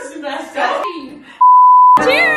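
Voices, then a loud steady beep at a single pitch for about half a second near the end, cut off abruptly: an edited-in censor bleep.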